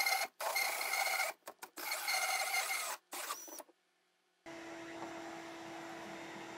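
Cordless Makita drill spinning a 6-inch hole saw through plywood in several bursts with short stops, its motor whining under the cut. After a brief silence, a shop vacuum runs steadily with a low hum, sucking up the sawdust.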